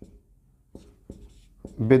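Marker pen writing on a whiteboard in short strokes, with a few brief clicks among them.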